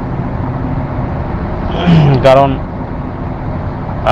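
A steady rushing background noise, continuous under a pause in a man's talk, with one short voiced sound from him about two seconds in.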